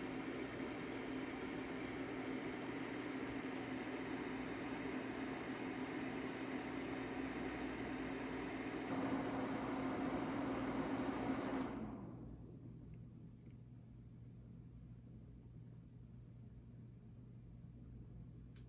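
UUO P6 LED projector's cooling fan running at full speed, a steady whir with a low hum, measured at about 56–57 dB. About twelve seconds in it winds down and stops as the projector is switched off, leaving only faint room tone.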